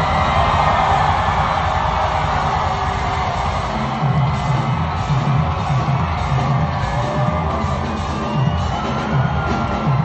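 A live rock band playing loudly, recorded from within the crowd, with audience members yelling and whooping over it. A pulsing bass beat comes in about four seconds in.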